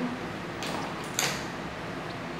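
Hands handling hair: two short rustles, a faint one about half a second in and a louder, brighter one about a second in, as fingers work at the curled hair and the heat-set ceramic wave clips in it.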